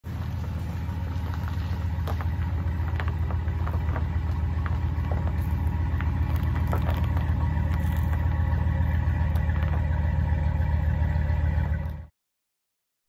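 Ram pickup truck reversing slowly toward the trailer hitch: its engine runs with a low, steady rumble near idle, growing a little louder as it closes in. Small crunches from the tyres rolling on gravel sound over it. The sound cuts off suddenly at the end.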